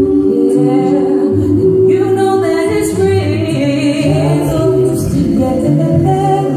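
Small a cappella gospel vocal group singing held notes in close harmony, men's and women's voices together with a low bass part under the higher voices.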